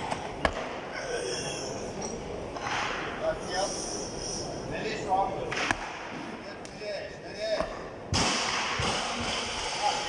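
Heavily loaded Olympic barbell with bumper plates during a clean and jerk: a sharp clank about half a second in, another knock near six seconds, and a louder rush of noise in the last two seconds. Faint voices murmur in a large hall.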